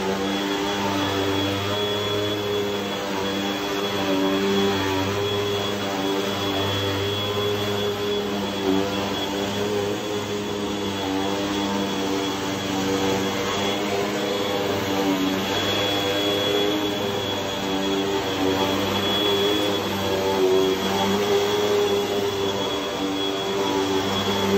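Upright vacuum cleaner running steadily on carpet: a constant motor drone with a high, steady whine over it.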